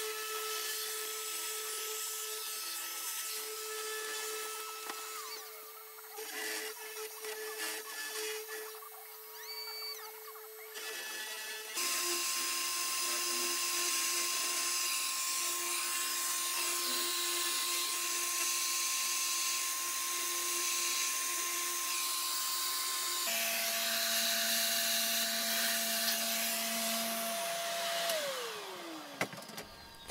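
Small spindle motor of a 3018 desktop CNC router whining steadily as a 1/8-inch end mill carves lettering into a wooden sign board. The whine jumps to a different pitch twice, and near the end it falls away as the spindle slows.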